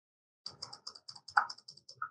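Computer keyboard typing: a quick run of about a dozen keystrokes starting about half a second in.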